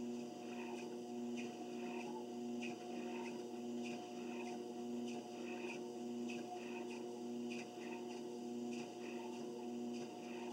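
Home treadmill running: a steady motor hum, with soft footfalls on the belt at a walking pace, a little under two steps a second.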